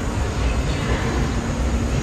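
Steady low rumbling background noise with no distinct events: the general ambience of a busy indoor hall with machinery running.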